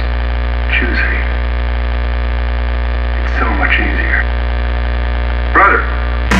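Loud, steady electric hum, a droning buzz with a heavy deep bottom, forming part of a sludge/doom metal recording. Three short voice-like swells rise over it.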